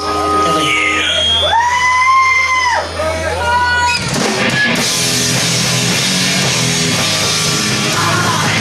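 Live crossover thrash band between songs: amp hum and a held guitar note, then about four seconds in the full band comes in with distorted electric guitars and drums.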